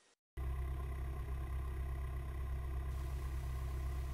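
Cessna 172P's four-cylinder Lycoming engine and propeller running steadily at low power, heard from inside the cockpit as a deep, even drone. It cuts in abruptly a moment in, after a brief silence.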